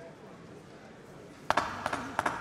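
Faint background murmur of the venue, then about one and a half seconds in an abrupt, much louder burst of voices and noise from the corner.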